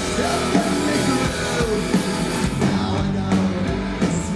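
Live heavy rock band playing a song: distorted electric guitars, bass and a drum kit in a dense, loud mix, recorded from the audience.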